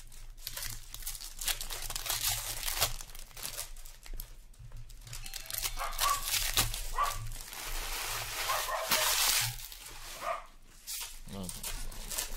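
Shiny trading-card pack wrappers crinkling and tearing open by hand, in repeated bursts of rustling, busiest and loudest from about six to nine seconds in.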